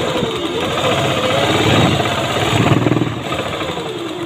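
Sewing machine running at speed, stitching satin fabric: a rapid, even rattle of needle strokes that is loudest in the middle and eases off near the end.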